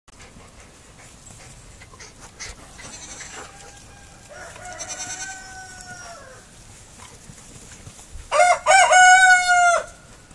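Baby goat bleating: a fainter drawn-out bleat about four seconds in, then near the end two short bleats and one long, loud bleat.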